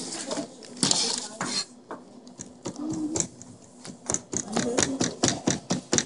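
Chef's knife chopping green herbs on a plastic cutting board: a run of sharp knocks that turns into a quick, steady rhythm of about five chops a second in the second half.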